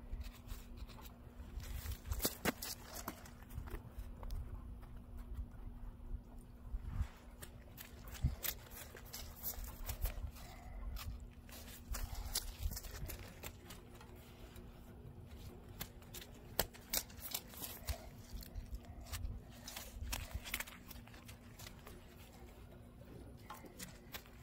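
Irregular crunching and rustling of footsteps and handling on a thin layer of snow over grass, with scattered sharp clicks and knocks, over a faint steady hum.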